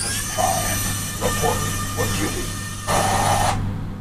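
Remote-control Transformers Optimus Prime toy truck driving, a steady sound with many held tones that starts suddenly and cuts off after about three and a half seconds.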